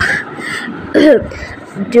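A person coughing and clearing their throat: two short rasps about a second apart, the second one voiced and falling in pitch.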